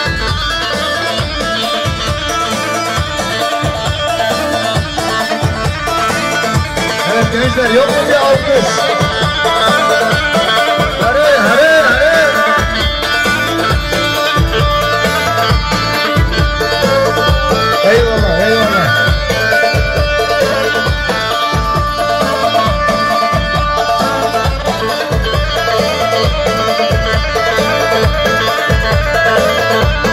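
Loud amplified halay dance music from a live saz band: a bağlama (long-necked saz) playing the melody over a steady, heavy low beat.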